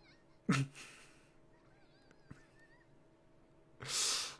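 A man's short vocal chuckle, falling in pitch, about half a second in, and a breathy laughing exhale near the end.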